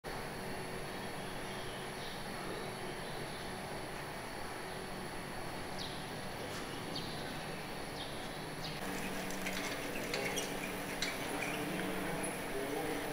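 Steady outdoor city background hum with a few short, high, falling chirps spaced a second or two apart. From about nine seconds in, a stronger low hum and a scatter of small clicks join.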